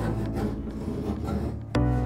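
Rasping scrape of a blade trimming stiff, epoxied fibreglass cloth along a panel edge, over background music with a low, sustained bass note; a new music note starts near the end.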